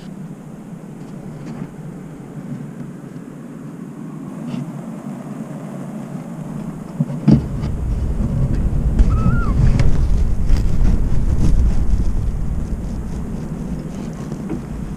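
Storm wind rumbling and buffeting around a barn owl's roosting box. It grows much louder and heavier about seven seconds in, with a few short knocks.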